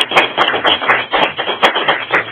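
A small audience applauding: a dense, uneven patter of hand claps.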